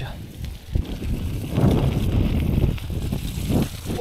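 Bicycle tyres rolling through wet mud, with wind buffeting the action camera's unshielded built-in microphone. The tyre and mud noise swells a little over a second and a half in and again near the end.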